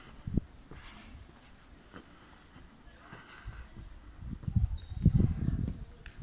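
Footsteps on stone paving with low, uneven rumbles of wind buffeting a handheld microphone, the rumble strongest about five seconds in.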